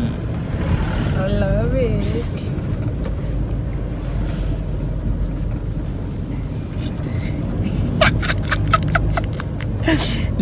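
Steady low rumble of a moving car heard from inside the cabin, its engine and road noise. A brief wavering vocal sound comes about a second in, and a cluster of short vocal sounds near the end.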